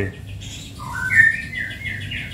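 A caged songbird whistling a short phrase of clear notes that climb in steps, starting about a second in.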